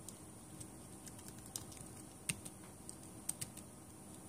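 Computer keyboard being typed on: a quick, irregular run of faint key clicks as a short terminal command is entered.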